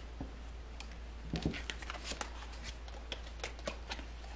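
Round oracle cards being gathered up and handled by hand: faint scattered clicks and light card rustles, with a few sharper taps about a second and a half in.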